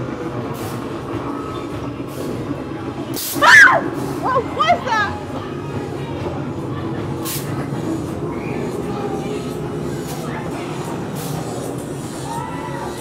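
Haunted-maze ambience: a steady low droning rumble with short hissing bursts every second or two. About three and a half seconds in comes a loud, shrill scream that slides in pitch, then a shorter string of yelps.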